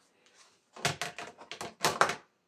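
A quick run of light plastic knocks and clatters, about six in just over a second, as a plastic funnel is put back among bottles and plastic baskets on a cabinet shelf. The loudest knock comes at the end.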